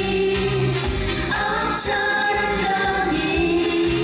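Female vocal trio singing long held notes in harmony through handheld microphones, over an amplified pop accompaniment with a pulsing bass and a cymbal splash just before the middle.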